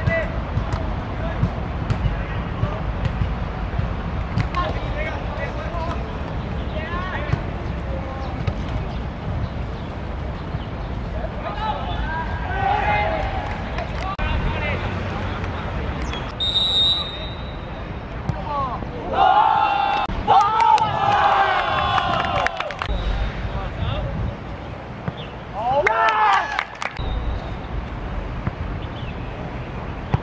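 Sounds of an outdoor youth football match: players and spectators shouting and calling over a steady low rumble, with a short, high referee's whistle blast about halfway through.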